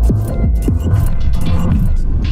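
Loud experimental electronic music: heavy distorted bass with a string of quick falling pitch sweeps, and short noisy crackles high above.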